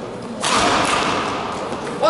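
Badminton racket smashing the shuttlecock: a sharp crack about half a second in, followed by a noisy wash that fades slowly in the echoing sports hall.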